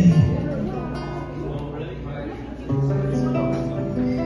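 A man sings long held notes over his own strummed acoustic guitar. His voice glides into a note at the start and moves to a lower held note about two and a half seconds in.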